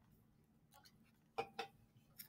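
Near silence broken by two short clicks about a second and a half in, a fifth of a second apart, from clicking on a computer to turn the page.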